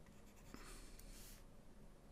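Faint scratching of a stylus scrubbing across a tablet screen to erase, lasting about a second, with a light tap in it.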